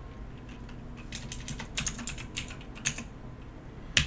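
Computer keyboard keystrokes: a short run of irregular typing clicks, with a sharper click at the very end.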